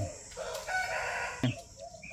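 A rooster crowing in the background, one call lasting under a second, around the middle.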